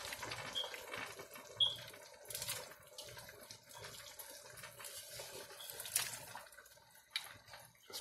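Seafood-boil broth bubbling in a large stockpot on a gas burner, a faint steady boiling with a low hum underneath. A few faint knocks come through, the clearest about one and a half and six seconds in.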